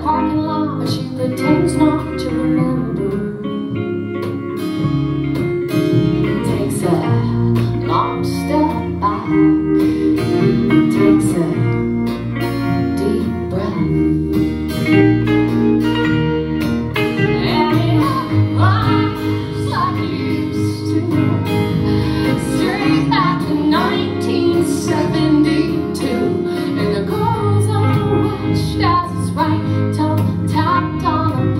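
Live country band playing a song: strummed acoustic guitar, electric guitar and upright bass, with a woman singing in parts.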